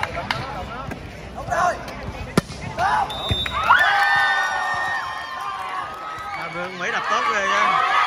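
A volleyball struck a few times with sharp slaps during a rally, then a short high whistle and spectators and players shouting and cheering in long drawn-out calls as the point ends.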